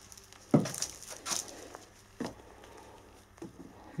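Handling noise from rubber resistance band loops and cotton work gloves as the bands are fitted over the handles of a hand gripper: a few short rustles and slaps, the loudest about half a second in.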